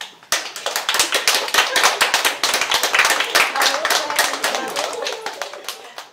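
A small group of people applauding, many quick overlapping claps with a few voices mixed in, thinning out near the end.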